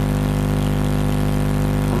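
A steady low mechanical hum made of a stack of even, unchanging tones, as loud as the speech around it, like an engine or generator running.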